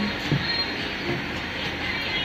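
Steady factory machinery noise, an even hiss with a low hum underneath, with a brief knock about a third of a second in.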